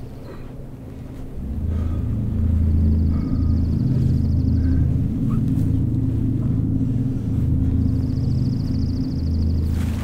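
A deep, low rumble swells in about a second and a half in and holds, pulsing unevenly. Above it are short bird chirps and a rapid high trill.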